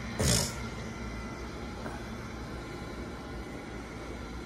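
A brief swishing rustle just after the start, then a steady low hum of room noise.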